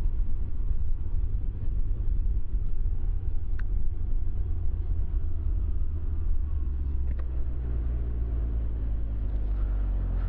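Wind rumble on the microphone over a Can-Am Ryker three-wheeler's engine as it slows down, with the wind easing as the speed drops. Near the end the engine's steady note comes through more clearly.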